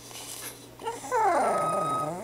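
Pug vocalizing on the "speak" command: a long, drawn-out pitched call that starts about a second in. Its pitch rises, then wavers and slides down, and it carries on past the end.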